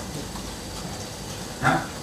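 Steady low room noise with a few faint laptop keystrokes as a line of code is edited and run, then a short vocal sound about one and a half seconds in.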